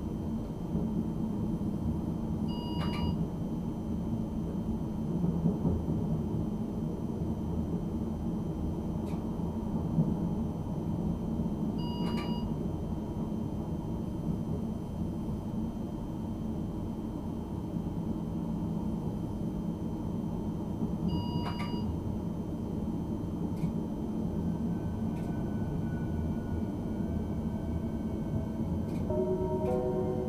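RegioPanter electric multiple unit heard from its driver's cab, running slowly with a steady rumble from the running gear. A short electronic cab beep sounds about every nine seconds, three times, and near the end faint electric whines fall and then step in pitch as the train slows into the station.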